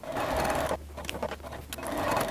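Electric sewing machine running as it stitches along a pocket's bias-binding edge, in two short runs with a brief stop under a second in.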